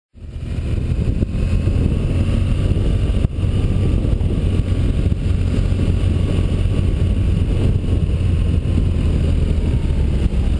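BMW R1200GS flat-twin engine running at a steady road speed, mixed with heavy wind rumble on the bike-mounted microphone. A single sharp click sounds about three seconds in.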